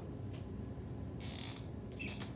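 Brief handling noise: a small click, then a short high-pitched hissing rustle a little past a second in, with further small clicks near the end.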